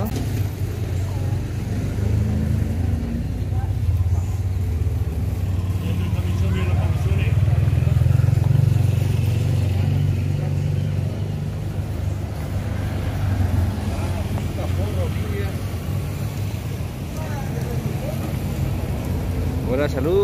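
Street traffic: a steady low rumble of vehicle engines, growing louder near the middle, with faint voices of passers-by.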